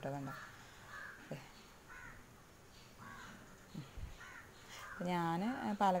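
Crows cawing faintly several times in the background during a pause in a woman's voice, which resumes near the end.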